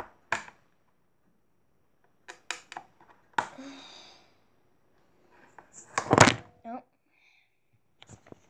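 A metal spoon clinking and scraping against an opened tin can of cat food in a few short clicks, then the camera falling and clattering, the loudest sound, about six seconds in.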